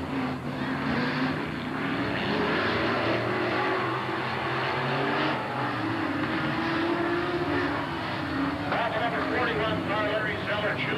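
Dirt-track late model race cars' V8 engines running as the field circles the oval, several engines at once, their pitch rising and falling as they pass and work the throttle.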